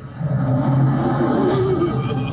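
Dramatic trailer soundtrack: a low, steady music drone builds to a rising whoosh near the end.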